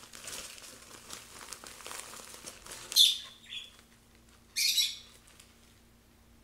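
Wood shavings and their plastic bag rustling as they are handled, then two loud, sharp calls from a caged bird about three and four and a half seconds in.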